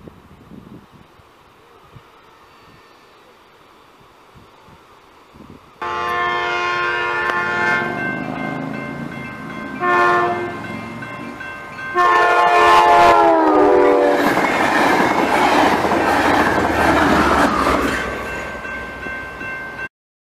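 Train horn at a level crossing: after a few seconds of quiet background, a long blast, a short blast and another long blast whose pitch drops as the train passes. The noise of the passing train follows, fading toward the end.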